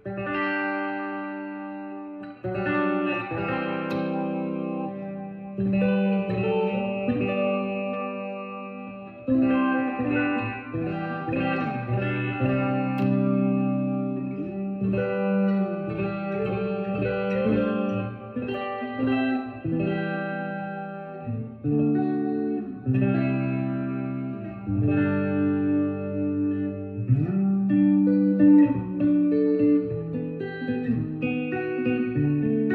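Gibson SG '61 Reissue electric guitar with '57 Classic humbucking pickups, played in a run of picked single notes and chords.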